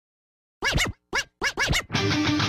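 Turntable scratches opening a music track: about half a second in, four short scratch bursts in quick succession, their pitch sweeping up and down.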